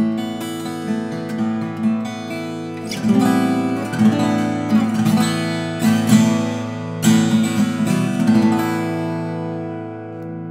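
Martin 00-28VS acoustic guitar, a 12-fret 00 body with Indian rosewood back and sides and a Sitka spruce top, played with the fingers: picked notes and strummed chords ringing on, with harder strokes about three seconds in and again around six to seven seconds.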